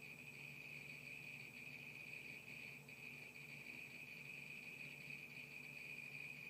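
Near silence: room tone with a faint steady high-pitched whine and a low hum.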